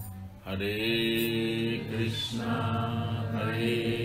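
Devotional mantra chanting in long held, sung notes over a steady low drone, after a brief pause about half a second in.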